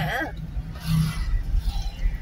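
Low, steady rumble of a car's engine and road noise heard from inside the cabin while driving slowly in city traffic, with a voice briefly at the start.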